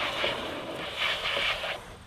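A large storage tray sliding into a camper's under-door storage compartment, a rasping scrape that comes in uneven pushes and dies away near the end.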